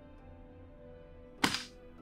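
Quiet background music with a steady held chord, and about one and a half seconds in a single sharp thunk as the door of a combination safe is swung shut.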